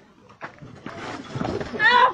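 A commotion of raised voices and rough cries that grows louder, ending in a high, wavering yell.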